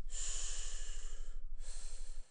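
A man breathing heavily: one long breath of about a second and a half, then a shorter one near the end.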